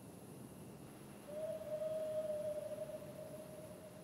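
One long faint howl of a dog or wolf, a single held note that sounds for about two seconds and fades away.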